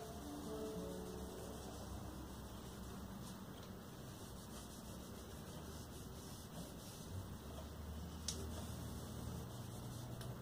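Faint steady low hum and hiss of a small room, with a sharp click about eight seconds in.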